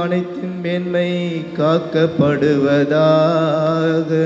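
A priest chanting a prayer in Tamil over a microphone, singing it in long held notes that glide from one pitch to the next.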